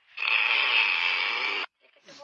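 A man's breathy, wheezing laugh, unvoiced and hissing, that holds for about a second and a half and then cuts off abruptly.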